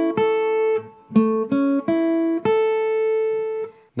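Guitar strings picked one at a time from the fourth string up to the first, sounding the F-chord shape barred at the fifth fret (A, C♯, E, A: an A major chord). The four-note run plays twice, every string ringing clearly, and the top note is left ringing for over a second.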